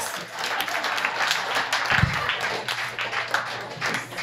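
An audience applauding: many people clapping steadily, with one dull low thump about halfway through.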